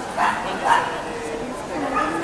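A dog barking twice in quick succession, two short high yips, over the steady chatter of a crowd in a large hall.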